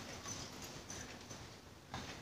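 Faint rustling of a semi-stitched gown's fabric being handled and folded, with scattered light ticks and one sharper click near the end.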